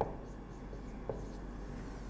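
Marker pen writing on a whiteboard: a soft scratching of the tip across the board, with a light tap as the tip meets the board at the start.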